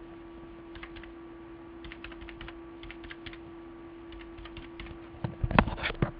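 Typing on a computer keyboard: scattered key clicks as a number is keyed in, over a steady low hum. Near the end comes a louder cluster of clacks with a thump.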